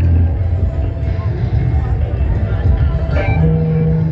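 Loud kecimol street-band music blaring from a towering speaker stack, dominated by heavy bass, with a voice over it. A steady held note comes in about three and a half seconds in.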